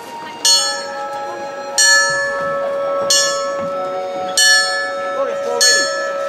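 A small brass bell rung by pulling its rope, struck five times about every 1.3 seconds, each strike ringing on into the next.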